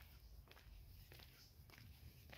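Near silence, with faint footsteps a few times about half a second apart.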